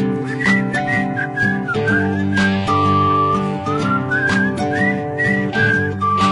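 Background music: a whistled melody over a strummed acoustic guitar.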